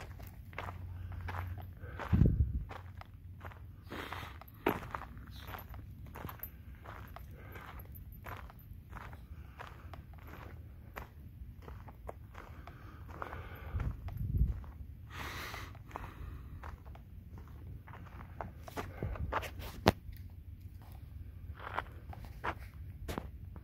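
Footsteps of a person walking on a packed dirt forest trail, an uneven run of soft crunches and scuffs. Two low thumps stand out, about two seconds in and again a little past halfway.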